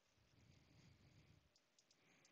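Near silence: a faint low rumble, then a few soft, quick clicks of a computer mouse and keyboard near the end.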